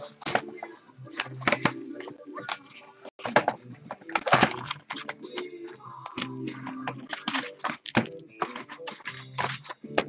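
Cardboard trading-card box being opened and foil card packs pulled out and set down on a wooden desk: a run of rustles, crinkles and light taps, over background music.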